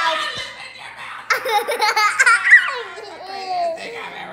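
A toddler laughing hard, high-pitched giggles breaking into a run of loud belly laughs about a second and a half in.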